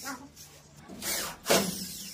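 Corded electric drill driving a screw through gypsum board into the metal ceiling channel. A short run starts about a second in and peaks sharply, then the motor winds down with a falling whine.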